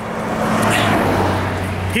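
A road vehicle passing close by: tyre and engine noise swelling to its loudest about a second in and easing off, with a steady low engine hum underneath.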